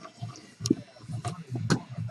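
A few faint clicks and knocks, about three across two seconds, the strongest near the end, over a faint low hum.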